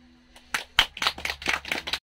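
The last acoustic guitar chord rings out and fades, then a small audience starts clapping about half a second in: a few people, with separate claps audible.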